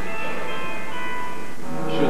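Theatre orchestra playing sustained chords under a stage musical number, a few held notes shifting partway through, between sung lines.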